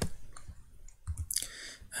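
A sharp click, then a few fainter clicks and taps from a computer's touchpad or keys as the desktop is worked, with a short soft rush of noise near the end.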